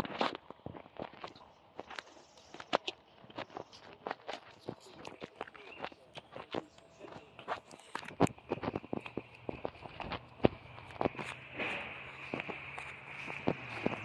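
Footsteps walking across grass, gravel and paving stones: an irregular run of soft crunches and sharp clicks. About eight seconds in, a steady high-pitched buzz and a low hum start up behind the steps.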